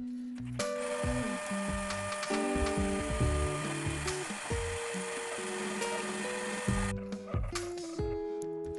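A shop vacuum switches on about half a second in, runs steadily, and cuts off abruptly about a second before the end, with background music playing throughout.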